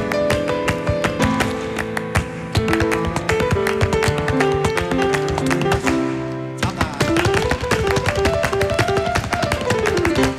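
Flamenco alegrías played on a grand piano, with rhythmic palmas (hand-clapping) keeping the compás; no singing.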